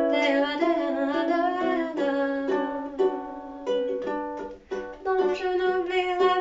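Ukulele playing an instrumental passage between sung verses, a run of chords and notes with a brief gap about three-quarters of the way through.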